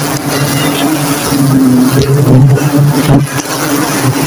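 A dense cluster of giant honey bees (Apis dorsata) on an open comb buzzing together in a loud, steady, low drone.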